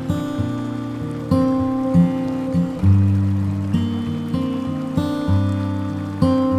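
Instrumental acoustic guitar music: plucked notes and chords that ring and fade, a new one every second or so.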